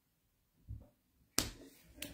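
A soft low thump about two-thirds of a second in, then a single sharp click about a second and a half in, from a hand at the phone and its holder, with quiet room tone around them.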